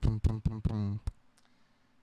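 A man's short, loud burst of laughter close to the microphone, four or five quick pulses in about a second, then quiet.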